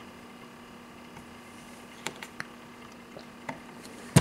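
Quiet room tone with a faint steady hum, broken by a few soft taps about halfway through and one more near the end, as a child's small hand fumbles at a plastic wall switch plate without flipping the switch.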